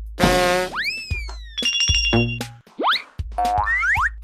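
Cartoon sound effects and a short music jingle from an animated children's number video: sliding pitch glides, one falling about a second in, then quick rising ones near three seconds and just before the end, with brief held chords between them.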